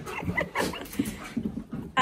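An Alaskan malamute and a husky greeting each other: short, scattered dog noises with a faint whine.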